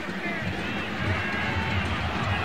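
Soccer stadium field ambience during live play: a steady crowd hum with faint distant shouts and voices.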